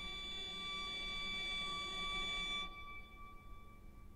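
Solo cello holding one long, high bowed note that stops about two-thirds of the way in, leaving only a faint ringing tail.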